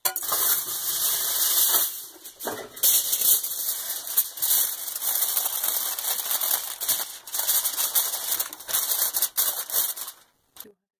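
Sheet of aluminium foil crinkling and crackling loudly as it is folded and pressed down by hand, in dense bursts with a short pause about two seconds in.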